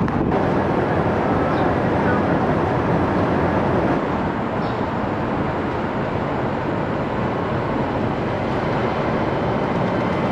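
Steady city traffic noise, an even wash of sound with no distinct events standing out.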